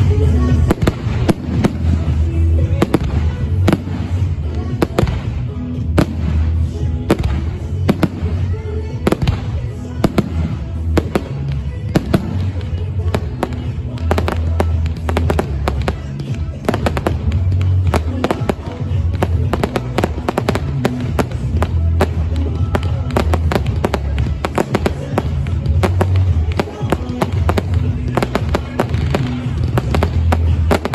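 Fireworks display: many shells and comets going off in rapid, near-continuous succession, a dense string of sharp bangs and pops with no pause.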